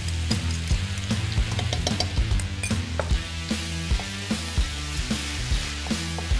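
Shredded cabbage, carrot and spinach sizzling in a frying pan as tomato paste is stirred in with a wooden spoon, with light scraping and knocks of the spoon against the pan. Background music with a steady bass plays throughout.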